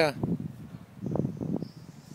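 Honeybees buzzing around a pair of backyard hives, with irregular rustling close to the microphone that is loudest about a second in.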